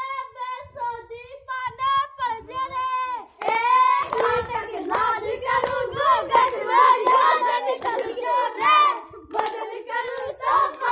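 Children singing a song in high young voices. About three seconds in, hand-clapping in time joins and the singing grows louder with more voices.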